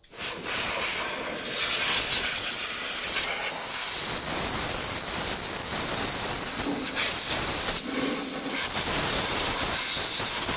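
Compressed-air blow gun hissing steadily as it blasts dirt off a small engine's flywheel fan. The hiss starts suddenly at the outset and keeps going without a break.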